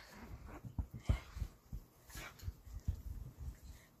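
A dog and a person's hands scuffling on a bed in play, with irregular soft low thumps of the dog rolling and kicking against the mattress and a few faint dog noises.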